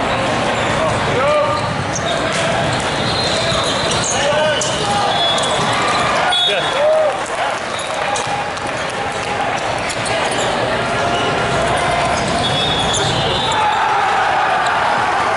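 Echoing volleyball-hall din: volleyballs struck and bouncing on several courts, with players' and spectators' voices and shouts. A few short, high whistle tones sound, one near the end.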